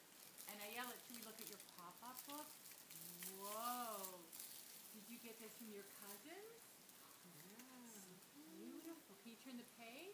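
Faint, indistinct voice sounds: soft wordless vocalising whose pitch rises and falls in short phrases, with light rustling and clicks in the first few seconds.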